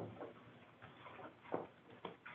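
A few faint, scattered clicks and light taps, the sharpest about one and a half seconds in.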